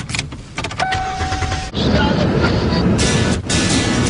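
Inside a car: a few sharp clicks and a short steady electronic tone lasting about a second, then loud music starts over the car's running noise about two seconds in.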